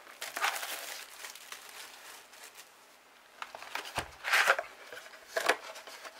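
Plastic shrink wrap crinkling in bursts as it is pulled off a cardboard trading-card booster box. There is a quiet stretch in the middle, then a soft thump about four seconds in, followed by the loudest crinkle and a shorter one about a second later as the box is handled open.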